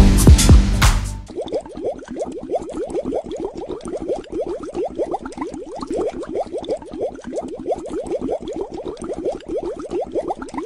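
Loud electronic dance music cuts off about a second in. It gives way to a quieter, steady stream of quick rising bubbly blips, several a second, like a cartoon underwater bubbling sound effect.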